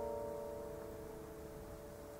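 Nylon-string classical guitar chord left ringing, several notes sustaining together and slowly fading away.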